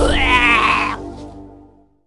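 A quavering, bleat-like wailing voice over background music. It breaks off about a second in and the sound fades to silence.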